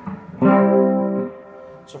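Electric archtop guitar chord strummed about half a second in and left to ring for about a second, played through a Strymon Deco tape-saturation pedal set for its chorusing effect with the warble turned up, into a small combo amp.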